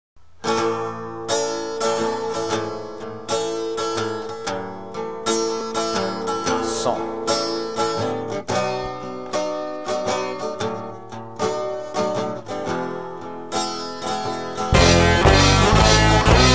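Song intro on a picked guitar, a steady run of ringing notes. Near the end the full band comes in, much louder, with heavy bass.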